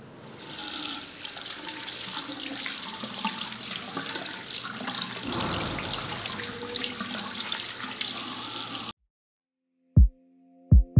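Water running from a tap into a sink, with hands being rubbed and rinsed under the stream. The steady splashing cuts off suddenly about a second before the end.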